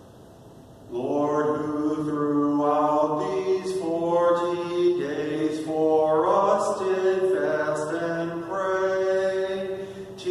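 A man singing slowly, holding each note for about a second before moving to the next, starting about a second in after a quiet start.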